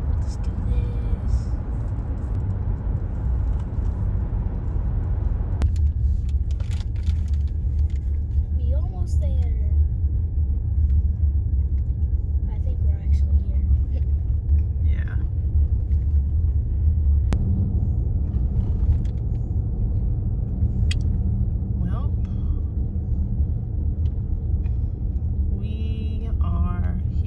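Steady low rumble of a car driving on the road, heard from inside the cabin. A higher hiss over it drops away abruptly about six seconds in.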